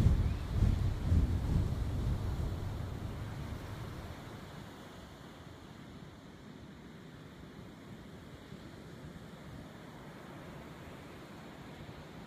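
Ocean surf and wind on the microphone. A gusty low rumble fades over the first few seconds into a steady faint hiss of waves.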